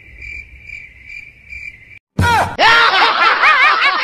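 Cricket chirping sound effect, about two chirps a second, for the first half. After a brief cut to silence, a short burst of noise hits and loud electronic music with sliding, wobbling pitches takes over.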